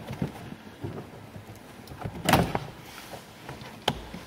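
Handwork on a car's glovebox mountings under the dashboard: low-level handling and rattling of the fasteners and plastic trim, with a loud sharp knock about two seconds in and another sharp click near the end.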